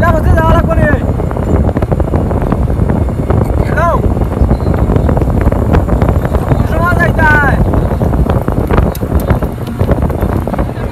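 Wind buffeting a microphone held out of a moving truck's window, over the rumble of the truck on the road. A few brief rising-and-falling voice-like cries cut through near the start, about four seconds in and about seven seconds in.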